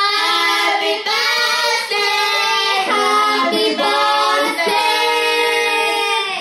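Female voices singing a birthday-themed song a cappella into microphones, with no instruments, in long held notes broken by short breaths about once a second.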